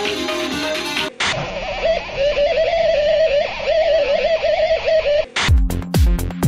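Electronic music played on Yamaha Tenori-on. For about the first second it is plucked-sounding notes, then it switches abruptly to a duller-sounding passage carried by a wavering melodic line. Near the end a dance beat with a deep kick drum comes in.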